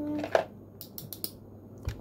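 A hummed note ends just after the start, followed by a loud sharp click and then a quick run of small clicks and a low knock from objects being handled at a desk.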